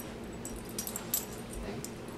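Light metallic jingling from a dog's collar as it moves about, a few short clinks coming between about half a second and a second in.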